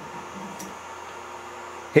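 Steady whir and hum of a powered-up Anet A8 3D printer's cooling fans and main power supply running, with faint steady tones in it.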